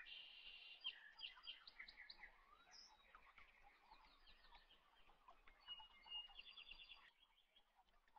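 Faint birds chirping, with short rapid trills at the start and again near the end.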